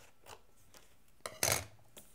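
Scissors cutting diagonally through a sheet of cardstock: a run of faint snips, with one louder, short noise about a second and a half in.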